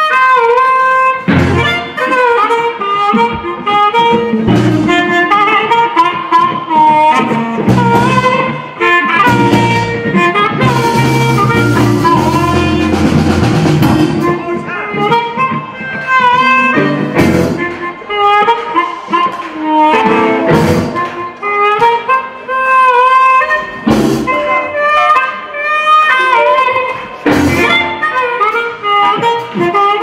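Live blues band with an amplified harmonica playing lead through a handheld microphone, its notes bending and sliding, over electric guitar and drums.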